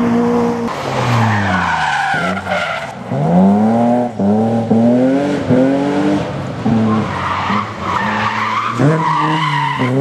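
Historic rally car engines on a gravel stage. First a car's engine note falls away as it leaves. Then a car accelerates hard through about four quick upshifts, the revs climbing and dropping at each change. Near the end another car's engine rises as it comes in, with gravel noise from the tyres throughout.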